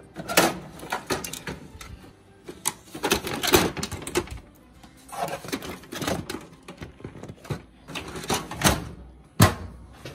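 Office printer's paper drawer pulled open and a stack of copy paper loaded into its tray: repeated plastic clicks, knocks and paper rustling, ending with one loud knock near the end as the drawer is shut.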